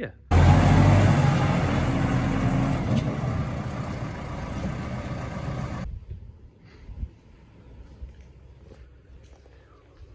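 A motor vehicle's engine running close by, loudest at first and fading over about five seconds, then cut off abruptly; after that only faint background with a few light knocks.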